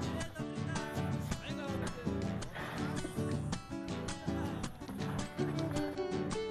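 Background music with plucked guitar notes in a busy rhythm.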